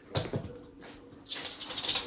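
A dog's claws clicking on a laminate floor, a quick run of light ticks in the second half, with a few single taps just after the start.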